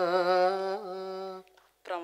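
A solo voice, unaccompanied, sustaining a long sung note whose pitch wavers in ornamented turns, in the manner of Tamil song; it stops about a second and a half in, and a short vocal sound follows near the end.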